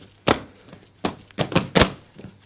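Sharp percussive strikes from Cretan dancers performing the pentozali: one about a quarter second in, then a quick run of about five in the second half, the last ones loudest.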